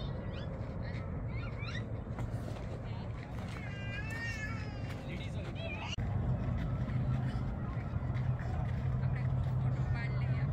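Background voices of people talking, with one high-pitched, wavering call about four seconds in. About six seconds in the sound changes abruptly and a steady low rumble comes in under the voices.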